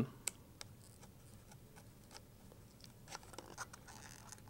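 Hobby knife blade cutting and picking at the foam tail of a model plane to cut out the old vertical fin: faint, scattered small scratches and clicks.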